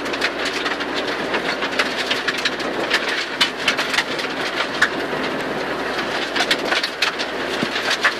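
Rally car at speed on a gravel stage, heard inside the cabin: the engine running under load with a steady drone, over a constant rattle of gravel and stones hitting the underbody, with sharp knocks scattered through.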